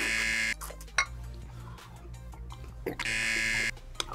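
Two harsh electronic buzzer blasts: one at the start and one about three seconds later, each under a second long and cutting off abruptly, over quiet background music.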